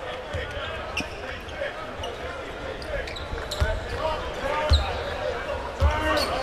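A basketball dribbled on a hardwood court: a few low bounces, irregularly spaced, loudest near the end, with short sneaker squeaks over a steady murmur of voices in the arena.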